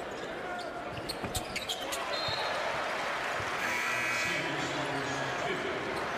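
A basketball bounced on the hardwood court in a large arena, with several sharp bounces in the first two seconds, over steady crowd noise. Voices rise from the crowd about halfway through, around a made free throw.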